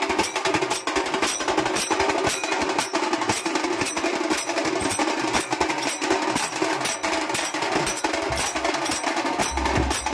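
Traditional procession drums beaten with sticks and a pair of small brass hand cymbals clashing together in a steady, even rhythm of sharp strikes.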